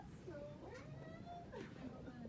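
A person's faint, wavering voice in the background, which she takes for crying.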